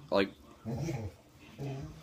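A dog whimpering twice, two soft, low whines that rise and fall in pitch.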